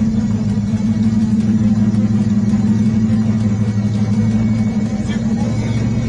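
Steady low drone of a moving road vehicle, heard from inside it as it drives along, running evenly with no change in pitch.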